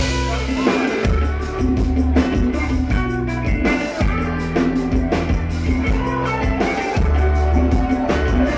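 Live band playing an instrumental passage with no vocals: electric guitar over a drum kit and deep, sustained bass notes that change about once a second.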